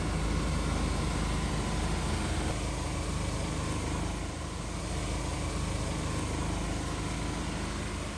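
Iveco Eurocargo army truck's engine running steadily at low speed. A continuous hiss comes from its high-pressure disinfectant sprayers.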